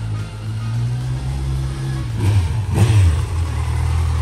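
Kawasaki Z900's inline-four engine running at low revs as the motorcycle pulls away, swelling briefly with a short rise and fall in pitch between two and three seconds in.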